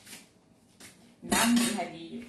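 Kitchenware clinking at a sink: faint small knocks, then a louder clatter about a second and a half in, with a brief voice over it.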